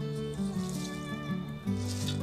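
Background music: a slow melody of held notes.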